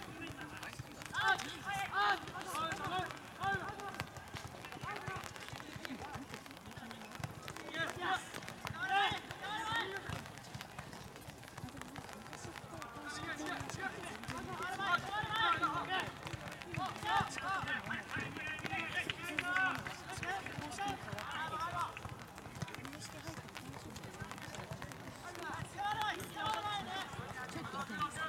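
Teenage footballers shouting calls to one another across an outdoor pitch during play, in short bursts throughout, too distant and overlapping to make out words.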